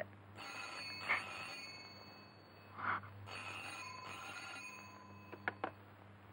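Landline telephone ringing: two rings, each a second or two long, with a short pause between them.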